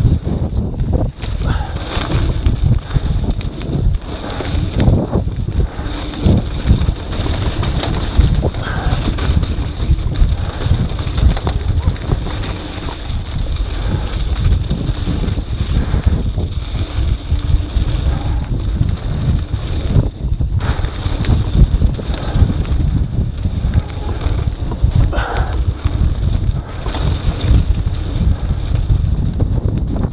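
Wind buffeting an action camera's microphone during a mountain bike descent at speed, a steady low rumble. Many small knocks and rattles come from the bike running over a rough dirt trail.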